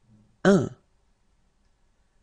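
A voice saying one short word, the French number 'un', about half a second in.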